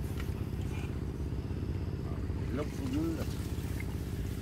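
A small engine running steadily at one even speed, a low drone. A voice says a short word about two and a half seconds in.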